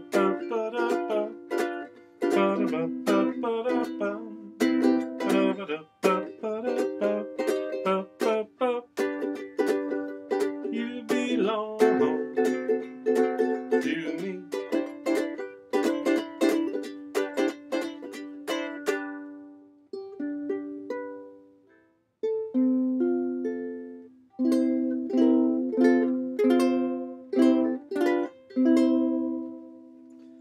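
Bruce Wei solid acacia koa concert ukulele strummed by hand, chords mixed with single picked notes. The playing thins almost to nothing about twenty seconds in, then the strumming picks up again.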